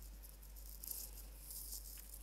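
Faint crackling rustle of wired earbuds being handled and pressed into the ear, in short scratchy bursts from about a second in.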